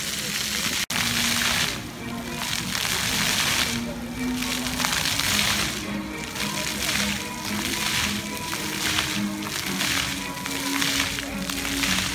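Water jets of a ground-level plaza fountain hissing and splashing onto wet paving, the spray swelling and fading in pulses, with music playing over it. There is a brief dropout about a second in.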